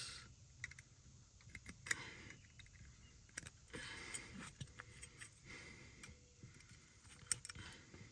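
Faint scattered clicks and handling rustle of wire connectors being pushed onto a car speaker's positive and negative terminals.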